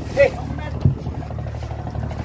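Fishing boat's engine running with a steady low hum, and a single dull thump just under a second in.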